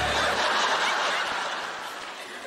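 A studio audience laughing at a punchline; the laughter fades away over the two seconds.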